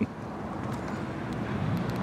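Steady low background rumble of distant city traffic outdoors, with a few faint ticks.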